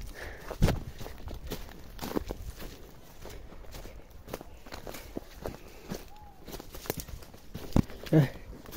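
A person walking along a dry brush trail: irregular footsteps with crackles and snaps of dry leaves and twigs underfoot, the sharpest knock about half a second in.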